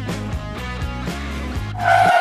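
Background music with a steady beat over a held bass line. Just before the end it cuts abruptly to a different, louder piece that opens on a long held note.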